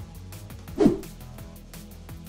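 Background music with a steady beat, broken by one short, loud burst of sound a little under a second in.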